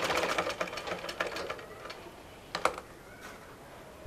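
Domestic sewing machine stitching a seam, its needle mechanism ticking rapidly, then slowing and stopping about two seconds in. A single sharp click follows a little later.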